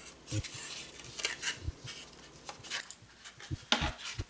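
Faint, irregular rustling, scraping and light knocking of styrofoam pieces being handled and pressed onto a homemade syringe air gun, with a sharper click near the end.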